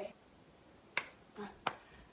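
Two sharp finger snaps about two-thirds of a second apart, with a short spoken "uh" between them.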